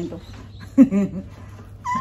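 A woman's short wordless vocal sound about a second in, with a brief high-pitched squeal near the end.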